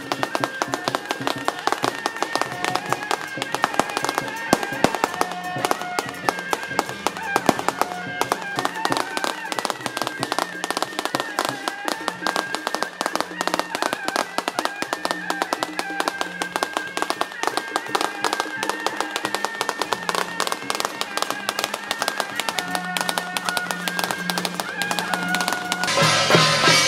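Processional music for a Taiwanese temple deity procession, a melody of held, stepping notes over a pulsing low line, with dense, continuous crackling like a string of firecrackers going off.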